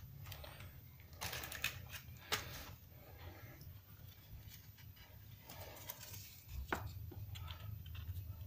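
Faint rustling and crinkling of thin red metal-leaf sheets and their paper backing being handled and separated, with a few sharp little clicks and crackles.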